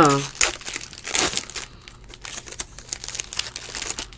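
Foil trading-card pack wrappers crinkling and tearing as packs are opened by hand, in irregular rustles, loudest about a second in.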